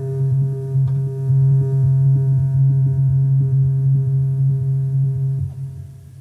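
Moog Matriarch analog synthesizer holding one low, steady drone note with a few fainter higher overtones, which fades away in the last second.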